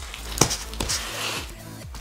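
Plastic lid of a powder tub being pressed closed, with one sharp click about half a second in. Quiet background music plays under it.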